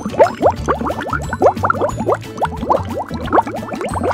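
Thick grenadine syrup poured through a funnel into a glass bottle, gurgling as air bubbles back up through the neck: a quick, uneven run of short rising bubbly chirps, several a second.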